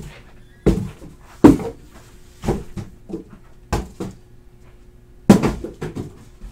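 Cardboard trading-card boxes being handled and set down on a table: irregular thuds and knocks, about five louder ones, the loudest near the start and near the end.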